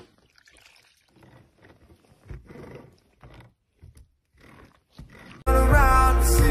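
Faint, irregular handling sounds of melted candle wax being worked with a metal pitcher and scraper over a silicone mold. About five and a half seconds in, loud pop music with singing starts suddenly.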